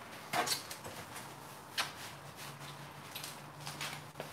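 Quiet handling of a roll of plastic wrap: a soft rustling knock about half a second in and a sharper click just under two seconds in, with a faint low hum in the second half.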